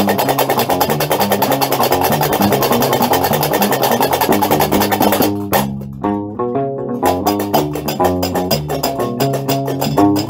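Gnawa music: a guembri (sintir), the three-string bass lute, plucking a repeating low riff under a fast, steady clatter of qraqeb metal castanets. The castanets drop out for about a second and a half past the middle, leaving the guembri alone, then come back in.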